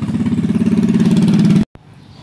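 An engine running with a rapid, even pulse, growing steadily louder, then cut off abruptly about one and a half seconds in.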